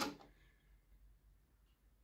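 A single mechanical click from the Kenwood KX-550HX cassette deck's stop key and tape transport at the very start as playback stops, then near silence.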